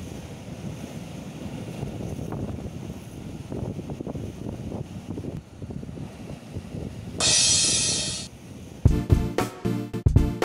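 Wind and surf noise on a rocky sea shore, then a loud hiss lasting about a second, about seven seconds in. Upbeat background music starts near the end.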